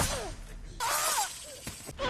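Film battle sound effects: a sudden crash at the start with falling swishes trailing after it, then a second loud noisy burst about a second in carrying a wavering high tone.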